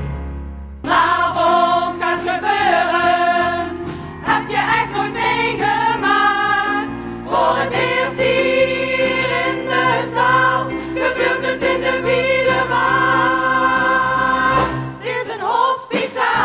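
Stage musical cast singing together as a group, with instrumental accompaniment. It starts about a second in after a brief quiet.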